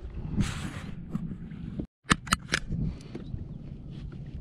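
Wind rumbling on the microphone of a kayak on open water. After a short break, a quick run of sharp clicks and knocks: gear being handled at the kayak's deck, then softer rustling.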